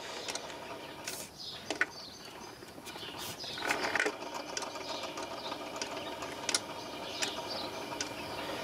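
Automatic record-changer turntable running: a steady mechanical whir from the motor and changer mechanism, with scattered sharp clicks from the changer parts.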